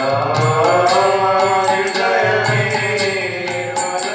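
Devotional chanting set to music: sung voices gliding over an even beat of sharp percussion strokes and low drum beats.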